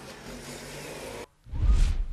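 Faint steady noise of a rally car setting off, which cuts out about a second in; then a loud deep boom with a rising whoosh, a cinematic transition sound effect.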